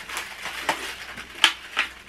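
Cardboard advent calendars being handled: a few sharp clicks and crinkles as the doors are pressed open and chocolates are pulled out, the loudest click about one and a half seconds in.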